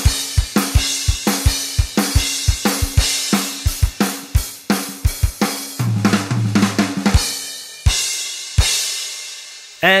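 Gretsch Brooklyn drum kit played in a driving rock beat, with the snare tuned up high and a 24-inch bass drum with its resonant head off and heavy muffling, under Paiste cymbals. About six seconds in comes a tom fill, then a few last hits and the cymbals ring out and fade.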